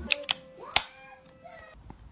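A few sharp clicks and taps, the loudest just under a second in, as a cardboard product box is handled and its lid opened. Faint voice-like sounds come between the clicks.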